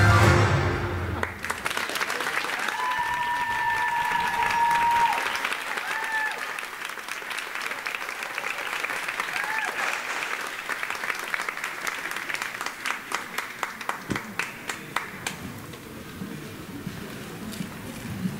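Dance music ends about a second in, and an audience applauds, with a few cheers in the first seconds. The applause then turns into rhythmic clapping in unison before it fades.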